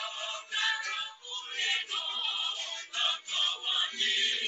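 Recorded song with singing, played back.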